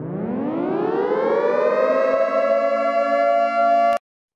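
A siren-like tone winding up in pitch over about two seconds, then holding steady until it cuts off suddenly.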